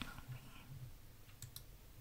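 Quiet room tone with a few faint, short clicks about one and a half seconds in.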